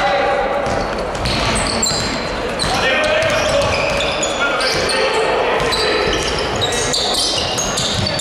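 Basketball shoes squeaking on a hardwood court in many short, high chirps, with a basketball bouncing as it is dribbled, over players' shouts in a reverberant sports hall.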